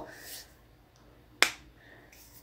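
A satin scarf being handled and folded: a faint rustle, then a single sharp click about one and a half seconds in.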